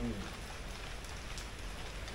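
Steady rain falling, an even hiss with no distinct drops or knocks standing out.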